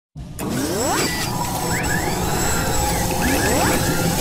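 Sound design for an animated logo intro: dense mechanical whirring with rising whooshing sweeps about a second in and again near the end, starting abruptly.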